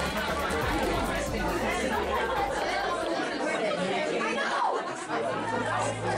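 Overlapping chatter of several voices talking at once.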